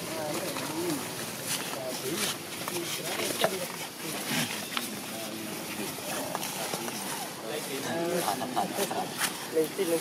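Indistinct voices of people talking, with scattered sharp clicks and rustles.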